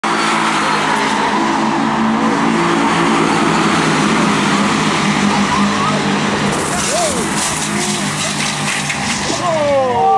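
A pack of Renault Clio race cars running at speed past the listener, engines steady. About six and a half seconds in, a loud hissing rush of tyre noise joins them, with tyres skidding as the crash begins.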